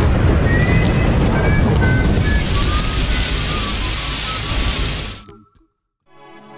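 Explosion sound effect: a loud, rumbling blast of noise lasting about five seconds, with a few short high notes stepping down in pitch over it, fading out a little after five seconds.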